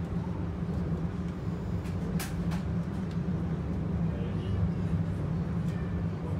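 Transilien suburban electric train running along the line, heard from inside the passenger carriage: a steady low rumble, with two short sharp clicks about two seconds in.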